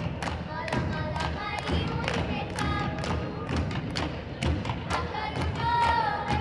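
Voices chanting a Hawaiian mele over a steady hand-drum beat, about two strikes a second, as accompaniment to hula.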